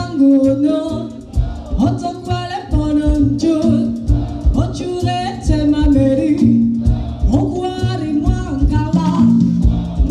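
Live band music: a woman singing a melody over acoustic guitar with a steady, rhythmic beat from bass and percussion.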